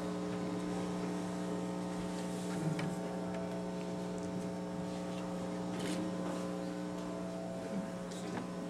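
Steady electrical mains hum, a constant buzzing tone with its overtones, with a couple of faint clicks.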